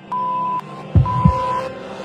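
Cinematic trailer sound design: a low double thud like a heartbeat about a second in, over a sustained drone and a high tone that pulses on and off about once a second.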